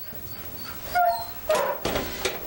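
Taiwan Dog whimpering, with two short high yips: one about a second in and a louder one about halfway through. It is being brought a bowl of fish, its favourite food.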